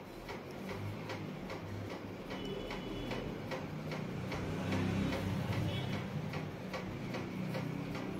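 Cumin seeds sizzling in hot mustard oil in a kadhai, with many small crackling pops throughout, over a low steady hum.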